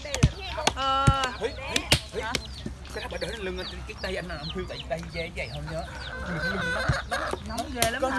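Free-roaming chickens clucking and calling: one longer, pitched call about a second in, then many short clucks. Several sharp knocks of stones striking on tree stumps.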